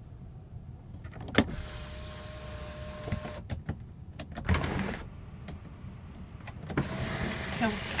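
Power panoramic sunroof of a 2013 Hyundai Santa Fe opening: a click about a second in, then its electric motor whines steadily for about two seconds and stops. A thump follows midway, and the motor whines again near the end.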